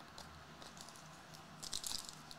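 Topps Chrome trading cards being handled and slid against one another in the hands: faint light clicks and rustles, with a louder flurry near the end.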